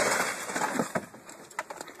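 Rustling, scraping noise as an overturned golf cart settles in the grass; it fades over about the first second, leaving a few faint clicks.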